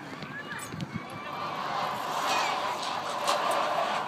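Indistinct voices in the open air, with a steady rushing noise that swells from about a second in.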